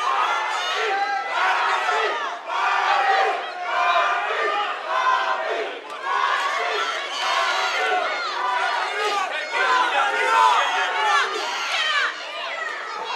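Crowd of spectators shouting at a cage fight, many voices overlapping and yelling at once.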